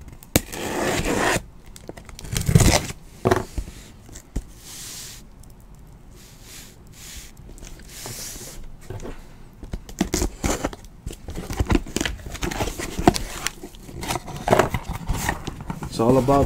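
Cardboard shipping case being opened by hand: irregular tearing, scraping and rustling of cardboard, with sharp clicks and knocks that come thickest in the second half.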